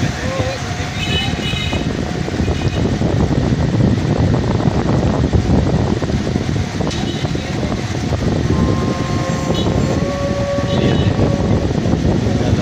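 Loud, steady rumble of a vehicle's engine and road noise while moving along a street. A steady tone is held for about three seconds near the end.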